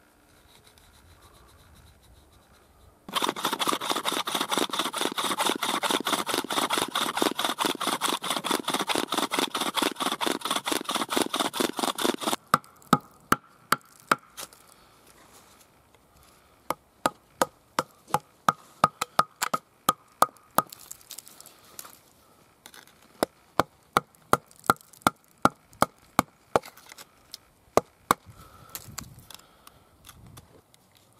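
Flint drill bit being twisted by hand into hard antler, stone grating on antler. About three seconds in, a dense run of fast scraping strokes starts and lasts about nine seconds, then gives way to slower, separate scratches and sharp clicks.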